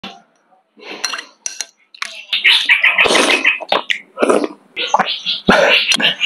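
Someone eating noodles from a bowl: noisy slurping bursts with a few sharp clinks of a spoon against the bowl.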